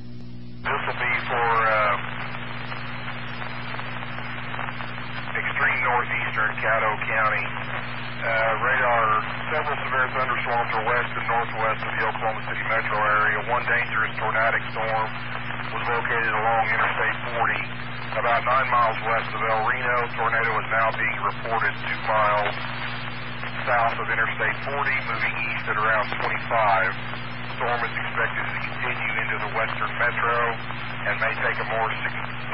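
A person speaking over a two-metre amateur radio repeater, the voice narrow-band and thin, with a steady hum under it; the speech starts just under a second in and runs on with short pauses.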